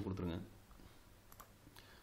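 A man's voice trails off in the first half second, then a few faint clicks of computer keyboard keys.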